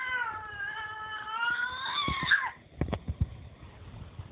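Baby's long, high-pitched squealing vocalization, wavering slightly in pitch, that stops about two and a half seconds in; a few soft knocks follow.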